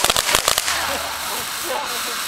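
Ground fountain firework spraying sparks: a dense rapid crackle for about the first half second, then a steady hiss.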